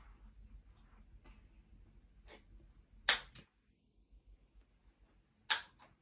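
Wooden kendama: the ball clacks against the wooden handle twice, once about three seconds in and again about half a second before the end, with faint ticks between.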